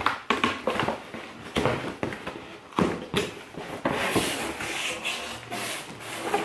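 Cardboard shipping box being torn open by hand: a run of sharp, irregular rips and knocks from the cardboard. From about four seconds in, a steadier rustling follows as the packaging inside is handled.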